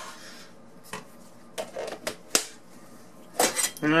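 A few separate clinks and knocks of a stainless steel saucepan and kitchen utensils being handled, with the sharpest about two seconds in and a quick cluster near the end.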